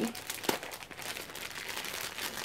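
Plastic mailer bag crinkling and rustling as it is handled and cut open with scissors, with one sharper click about half a second in.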